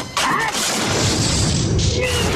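Film fight sound effects of bamboo ladders and wooden scaffolding smashing: a loud crash sets in just after the start and carries on as a continuous clattering din, with the film score underneath.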